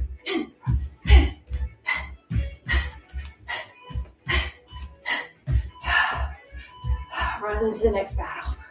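A person's sharp, rhythmic exhales with each knee-and-elbow strike, about two to three a second, each with a low thud beneath, over steady background music.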